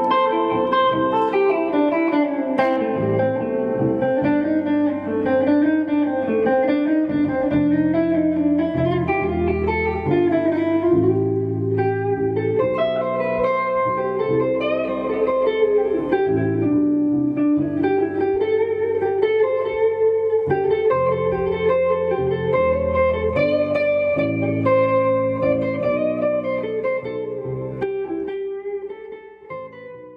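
A band playing a song, with a Stratocaster-style electric guitar to the fore, fading out near the end.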